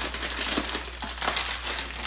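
Plastic bag of dried red beans crinkling steadily as it is handled.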